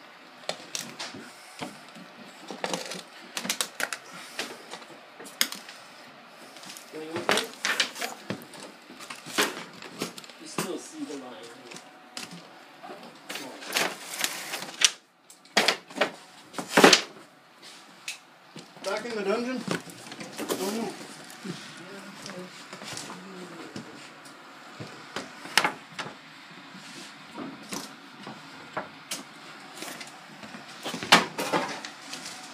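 Irregular knocks and clicks of handling and work around wooden kitchen cabinets, with one sharp knock about halfway through, and low speech now and then.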